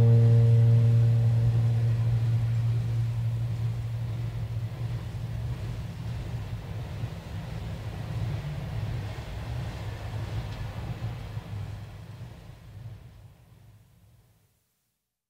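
The last strummed acoustic-guitar chord of a song ringing out over a steady low hum and hiss from a lo-fi recording. The ringing dies within about two seconds. The hum fades slowly and cuts off into silence near the end.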